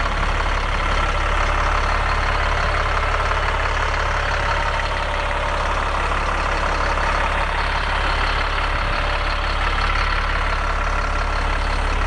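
Caterpillar C7 7.2-liter turbo diesel engine idling steadily, heard up close through the open rear engine compartment of a bus.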